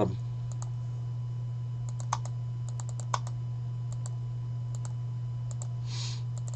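Scattered light clicks of a computer mouse and keyboard as a list is copied and pasted, two of them a little louder about two and three seconds in, over a steady low hum.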